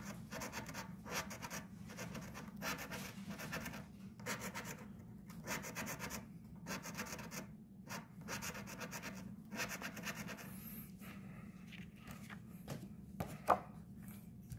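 A copper coin scraping the scratch-off coating off a paper lottery ticket in quick, irregular rasping strokes. There are a couple of sharper taps near the end.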